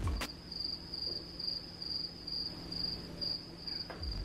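The background music cuts off suddenly, leaving cricket chirping: a single high chirp repeating a little over twice a second, the stock 'awkward silence' sound effect.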